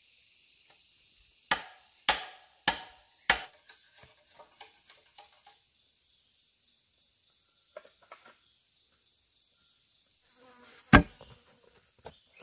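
Four sharp strikes on bamboo, about half a second apart, followed by a few lighter taps, over a steady high drone of insects that stops about halfway. One louder single strike comes near the end.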